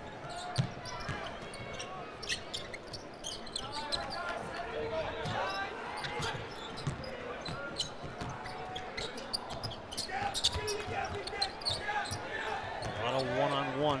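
A basketball being dribbled on a hardwood court, sharp bounces over the steady chatter of an arena crowd.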